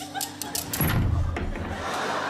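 Steel handcuffs worked close to a microphone, their ratchet giving a run of sharp metallic clicks, followed by a louder low rumble from a little under a second in.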